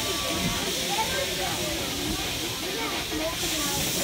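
Steam locomotive hissing steadily as it runs, with faint voices underneath.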